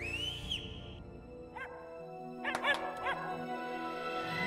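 A puppy whining and yipping: one rising whine at the start, a single short yip about a second and a half in, then three or four quick yips near the three-second mark, over soft soundtrack music.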